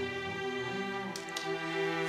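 Background music score of bowed strings playing slow, held notes, moving to new notes partway through.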